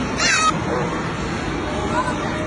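A young child's short, high-pitched squeal that slides down in pitch, over a steady background din.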